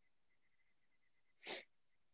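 Near silence, broken about one and a half seconds in by a single short, sharp burst of breath noise from a person at the microphone.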